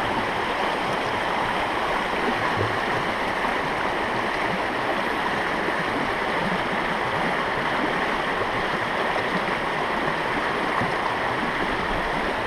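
Shallow river water rushing steadily over rocks in a riffle.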